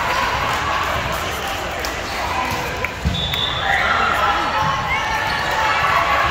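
Busy gymnasium during volleyball play: many voices chattering and calling across a large echoing hall, with balls thudding on the floor, the loudest thud about three seconds in.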